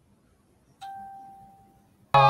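A single bell-like chime about a second in: one clear tone that sets in sharply and fades away over about a second.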